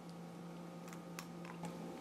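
A few faint, short clicks as a cracked eggshell is pulled apart by hand over a small glass bowl and the egg drops in, over a steady low hum.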